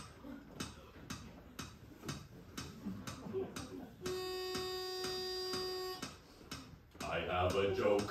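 Steady ticking, about two ticks a second. About halfway through, a steady pitched note is held for about two seconds and cuts off suddenly, while the ticking goes on.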